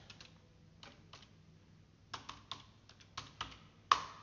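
Computer keyboard keys typing in short, irregular runs of clicks, with one louder keystroke near the end.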